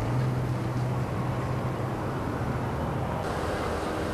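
Steady traffic noise from a queue of cars and pickups idling and creeping forward, with a low, even engine hum.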